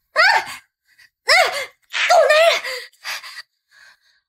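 A woman's startled, high-pitched cries and gasps. They come as several short vocal bursts whose pitch slides up and down, and the last is faint near the end.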